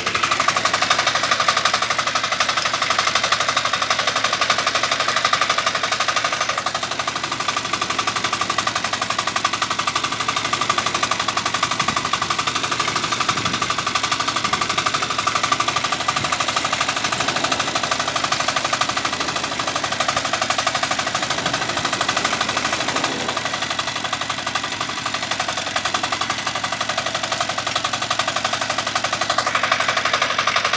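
Motocultor (two-wheel walking tractor) engine running steadily while the machine drives, its exhaust beats rapid and even like a rattle of shots.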